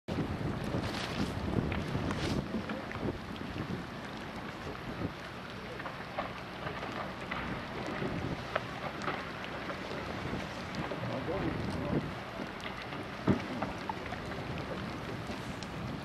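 Wind blowing across the microphone on an open boat deck, over a steady wash of water, with faint voices in the background.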